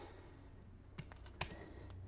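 A few faint metallic clicks, two of them a second or so in, as a farrier's long-handled pulling tool works at the steel shoe on a draft horse's hoof, over a low steady hum.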